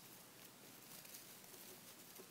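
Near silence, with faint rustling of wire ribbon being twisted and handled.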